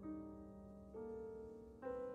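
Amplified grand piano playing slow, soft single notes, a new one struck about once a second and each left ringing over a long-held low note.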